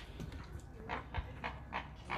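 A flock of flamingos calling: a quick series of short, faint calls, several a second.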